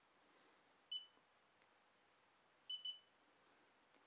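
Xiaomi Yi action camera's built-in beeper sounding as the camera reboots: one short high beep about a second in, then a quick double beep near three seconds.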